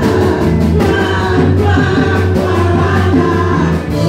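Live gospel worship music: a woman leads the singing into a microphone and a group of backing singers joins her, over a drum kit with cymbals and steady low accompaniment.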